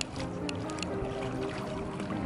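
Background music with soft, steady held notes.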